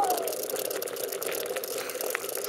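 Steady rushing noise from wind and handling on a camera carried at a run.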